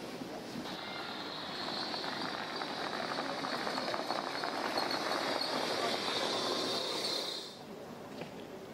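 A small electric utility cart driving toward the listener, its running noise growing slowly louder over a steady high hiss, then cutting off abruptly near the end.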